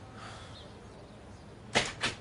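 A short fabric swish as a schoolbag is swung up onto a shoulder, loudest near the end, with a fainter rustle of the bag being handled before it.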